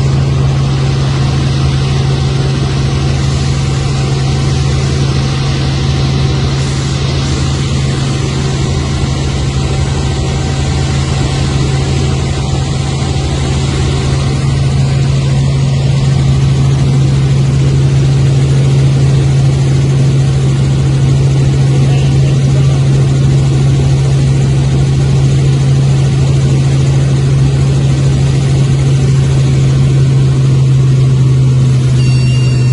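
Robinson R44 helicopter in flight, heard from inside the cabin: its piston engine and rotors make a loud, steady low hum with airflow noise, growing slightly louder about halfway through.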